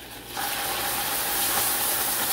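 Silicone-coated whisk beating hot caramel sauce and freshly added heavy cream in a saucepan: rapid, steady whisking with the hiss of the bubbling sauce, starting suddenly about half a second in.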